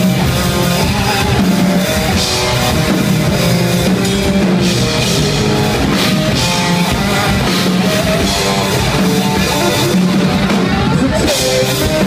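A live rock band playing loud: distorted electric guitar over a pounding drum kit with crashing cymbals, recorded from the audience. It is a mostly instrumental stretch of the song.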